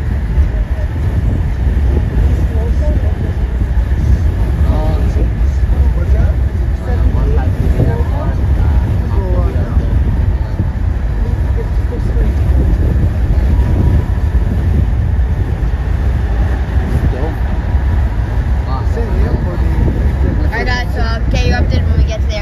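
Car driving at highway speed: a steady, loud rumble of road and wind noise, with faint voices underneath. Near the end, brighter voices break through.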